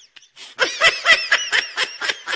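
High-pitched, rapid giggling laughter: a brief lull, then about half a second in a quick run of short laughing bursts.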